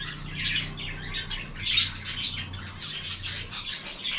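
Small caged birds chirping rapidly, a dense, overlapping chatter of short high calls, over a faint steady low hum.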